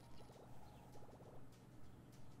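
Very faint online slot-game sound effects: two short rapid rattling chirps as the free-spin multiplier counts up and a win lands, over a low hum and a soft regular pulse.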